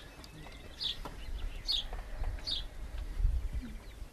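Short, high bird chirps, about four of them in the first two and a half seconds, over a low background rumble.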